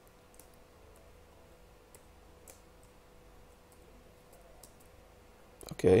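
Computer keyboard keys clicking faintly as code is typed, single keystrokes at an irregular, unhurried pace. A man says "okay" near the end, the loudest sound.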